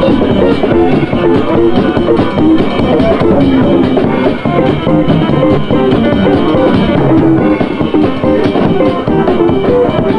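Instrumental band jam: guitar played over a drum kit, loud and steady.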